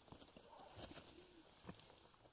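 Near silence in open air, with a faint low call, likely a distant bird, in the first second and a few faint clicks.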